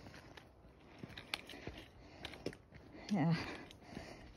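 Quiet open-air hiss with a few faint, scattered clicks and scuffs, then a short spoken "yeah" about three seconds in.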